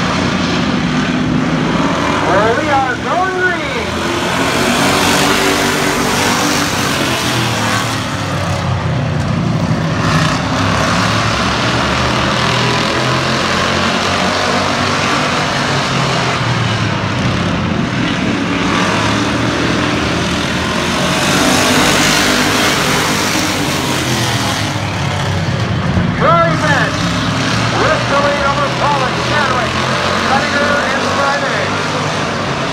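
A field of hobby stock race cars running together on a short oval, many engines droning in a loud, steady mix that swells and fades as the pack goes round.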